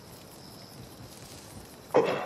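Low, steady background hush of a quiet night, with a sudden short sound right at the end.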